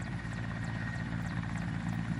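Mil Mi-8-family twin-turbine transport helicopter running on the ground with its main rotor turning. It makes a steady low drone with a steady high turbine whine over it.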